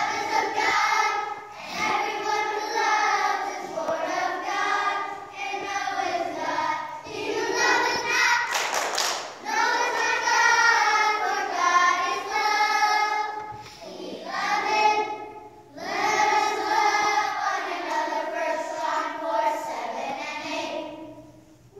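A group of young children singing a song together, with held notes and short breaks between phrases. A brief hiss-like burst comes about halfway through.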